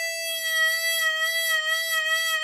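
Chromatic harmonica holding one long, steady note for over three seconds, with a slight slow waver in the tone: a long note given some motion by being eased down and up.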